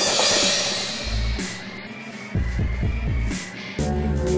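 Industrial electronic dance music in a breakdown: a burst of hiss at the start fades away, then sparse deep bass throbs, and the full beat comes back in near the end.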